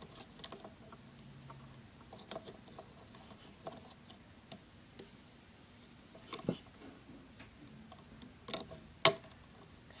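Scattered small clicks and taps of a plastic Rainbow Loom and a loom hook as rubber bands are worked onto the pegs. The sharpest click comes about nine seconds in.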